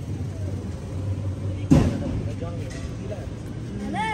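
Street background: a steady low rumble with faint voices, and one sharp knock or thump a little before halfway through.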